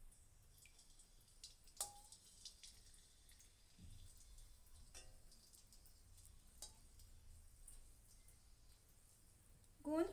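Near silence, broken by a few faint clinks of a metal slotted spoon against a steel kadai holding warm ghee, each with a short metallic ring.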